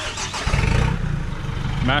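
A vehicle engine running, with a low rumble that grows louder about half a second in.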